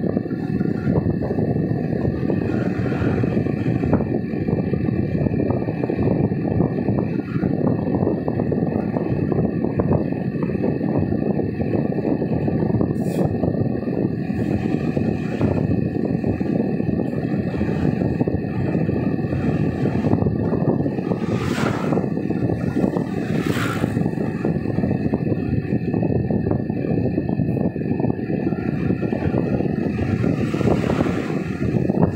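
Steady road and engine rumble heard from inside a moving car's cabin, with two brief swells of hiss a little over two-thirds of the way through.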